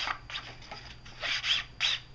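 Ink pad rubbed directly along the edge of a heavy paper card panel: a few short, papery scraping strokes.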